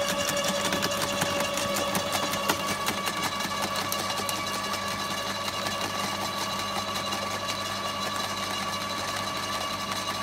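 Ozito silent garden shredder running steadily with a low hum, with dense crackling and snapping as leafy branches are drawn into its hopper and crushed.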